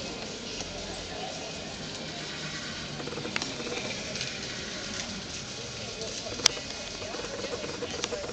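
Indistinct talk of people close by over a steady background hum. There is a faint click about three and a half seconds in and a sharp, louder click about six and a half seconds in.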